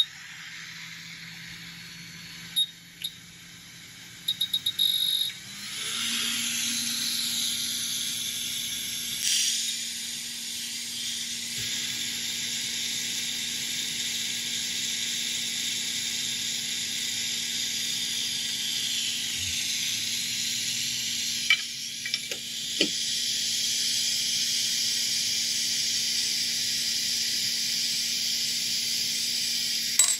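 Quick hot air rework station blowing a steady hiss of hot air through its nozzle, heating an HDMI port to melt its solder for removal, with a low hum under the air. It is preceded by a few short electronic beeps and has a few light clicks about three-quarters of the way through.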